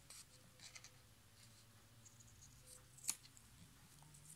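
Faint paper handling and rustling, then scissors snipping through paper, with one crisp snip about three seconds in.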